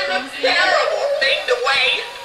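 Animated Halloween decoration playing its recorded song: an electronic singing voice over music.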